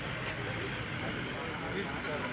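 Armored police vehicle's engine running as it rolls slowly past, with people talking in the background.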